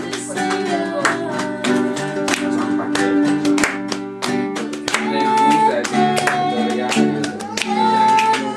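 Acoustic guitar strummed in a steady rhythm, with a voice singing along.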